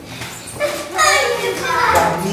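A young child's high-pitched wordless vocalizing, starting about half a second in and loudest in the second half.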